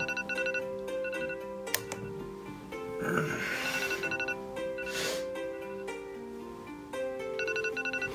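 Smartphone alarm tone: a short melody of chiming notes that repeats over and over. It sounds while the alarm goes off at wake-up. There is a short rustle about three seconds in and another at about five seconds.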